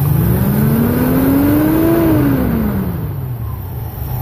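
Engine of a 1970 International Travelette, freshly converted to electronic ignition, revved once by hand at the throttle: the speed rises smoothly for about two seconds, then falls back to idle. The rev is used to check the timing advance with a timing light.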